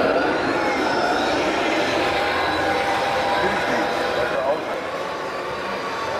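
Steady murmur of many voices in a hall over the running noise of a 1/16-scale Hooben RC M1A2 Abrams tank driving on its tracks, its digital sound unit playing the engine sound.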